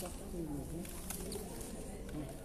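Faint, indistinct voices murmuring in the background of a room, with a few light clicks.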